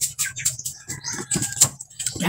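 Wet bites, chewing and slurping of people eating juicy watermelon slices: a quick run of short smacks and clicks.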